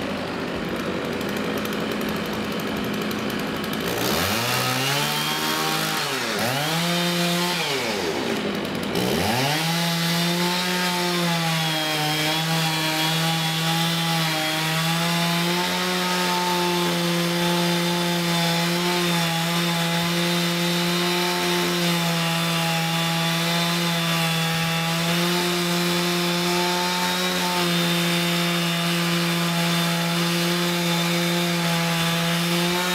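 A STIHL chainsaw runs at a low, steady speed, is revved up and down a couple of times between about four and nine seconds in, then is held at high, steady revs while cutting wood.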